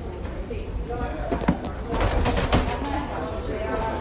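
Indistinct voices over a steady low rumble, with a short run of knocks about two seconds in.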